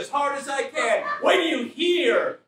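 A man's voice making wordless vocal sounds, with the pitch sliding up and down.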